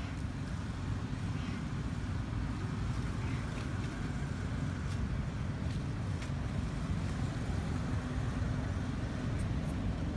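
Steady low rumble of a motor vehicle engine running nearby, constant in level, with a few faint ticks over it.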